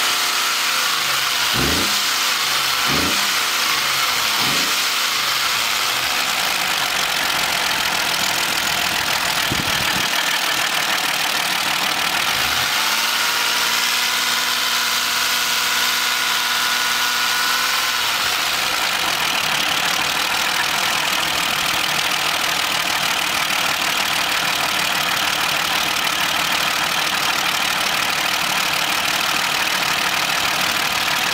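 A Buick Lucerne's V6 engine running with the hood up. It is blipped up and down several times in the first few seconds and again around ten and twelve seconds in, held at raised revs for about five seconds, then drops back to a steady run.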